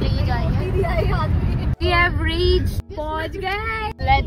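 Voices singing inside a moving car, over the steady low rumble of the car on the road. The singing breaks off sharply twice, about two and three seconds in.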